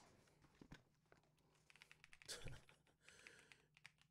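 Near silence: room tone with a few faint, scattered clicks.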